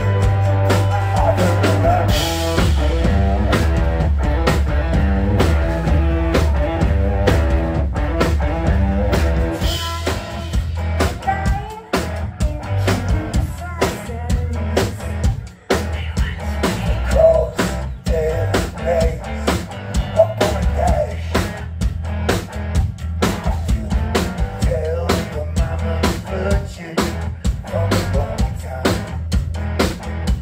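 Live rock band playing loudly: electric guitar, bass and drum kit, with the drums driving a steady beat that grows busier about ten seconds in and two brief drops in the music shortly after.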